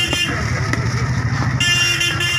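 Steady low rumble of a running engine, with a brief high-pitched tone about a second and a half in.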